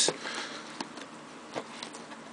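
Faint handling noise from a hand touching shrink-wrapped cardboard trading-card boxes, with a few light taps.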